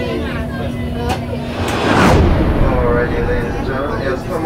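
Passengers chatting in a submarine cabin, and about two seconds in a loud hissing rush that sweeps down in pitch and dies away within a second.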